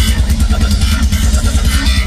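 Live country-rock band playing loud, with the drum kit prominent: fast drum hits over heavy bass and no singing.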